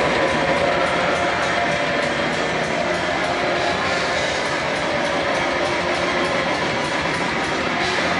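Symphonic black metal band playing live at full volume: electric guitars and drums in a dense, unbroken wall of sound.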